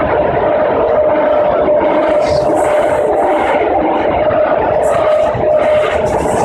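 BART train running, heard from inside the car: a loud, steady rumble of rail noise with a constant whine held throughout, and a few brief high rattles.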